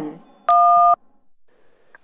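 A single telephone keypad tone, two steady notes sounding together for about half a second, keyed in answer to an automated jail collect-call prompt.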